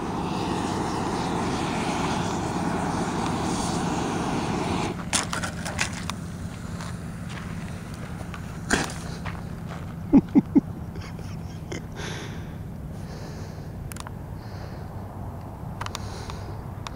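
Model rocket motor burning at the foot of its launch rod with a steady hissing rush for about five seconds, the rocket failing to lift off, then cutting out; a few sharp pops follow, and a short laugh a little after ten seconds in.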